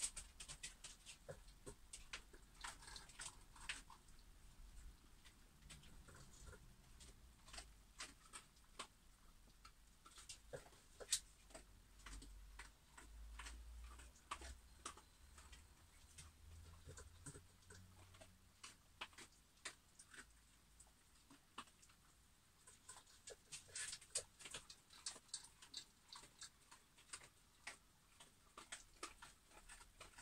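Dogs eating, heard faintly as irregular clicks, with a busy cluster near the start and another a little before the end.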